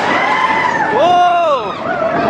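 Roller coaster riders screaming and whooping as the train runs into a dark tunnel: several long held voices, with one loud scream about a second in that rises and then falls away.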